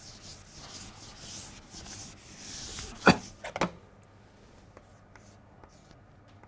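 A blackboard duster rubbing back and forth across a chalkboard, wiping it clean, with a steady scratchy hiss of quick strokes. About three seconds in come two sharp knocks, the loudest sounds, then a few faint taps of chalk on the board as writing begins.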